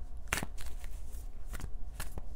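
A tarot deck being shuffled and handled, giving a few sharp card clicks over a low steady hum.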